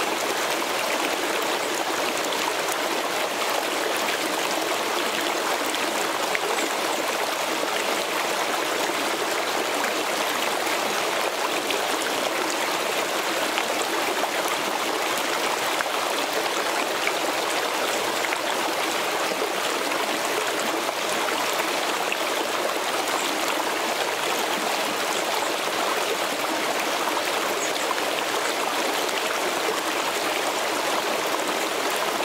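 Shallow mountain creek flowing and trickling over rocks: a steady, even rush of running water.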